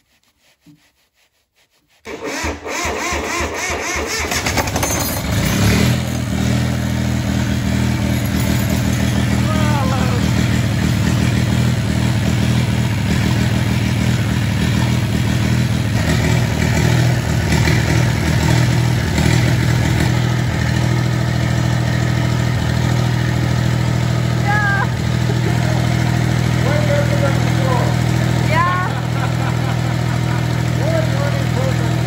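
Northern Lights 5 kW marine diesel generator cranked by its starter for about three seconds. It catches and then runs steadily. With air bled from its fuel lines, it is now running well, called 'way better then before'.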